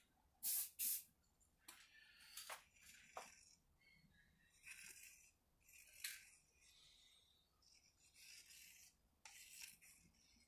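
Faint soft swishes of a hand spreading and smoothing wet epoxy over a sink backsplash, following two short, louder sharp sounds within the first second.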